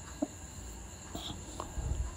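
Quiet shop room tone: a steady high-pitched whine over a faint low hum, with a couple of light ticks.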